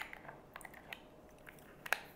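A small caviar jar is moved aside on a wooden board, setting down with a sharp click. Faint small clicks follow, then another sharp click near the end.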